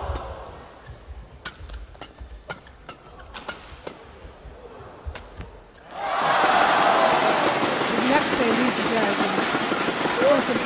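Badminton rally in an indoor arena: sharp racket strikes on the shuttlecock about every half second. About six seconds in, the crowd breaks into loud cheering and shouting as the point is won.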